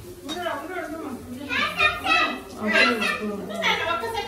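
Children's voices talking and calling out, in several short phrases with rising and falling pitch.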